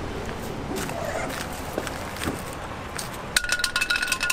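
Steady outdoor background noise, then, a little over three seconds in, a sharp clink followed by a quick run of metallic clinks and ringing as the metal parts of a Vibe X Drive kayak pedal drive are handled.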